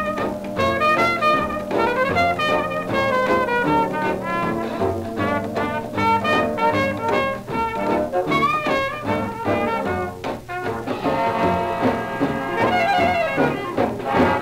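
A 1930s swing dance orchestra playing an instrumental passage after the vocal chorus, played back from a 78 rpm shellac record. The ensemble grows fuller about three quarters of the way through.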